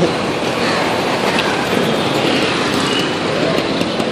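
Steady street traffic noise on a busy city road, a continuous din of passing vehicle engines.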